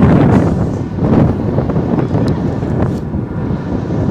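Wind buffeting the microphone on an open glacier: a loud, gusting low rumble that swells and dips without a break.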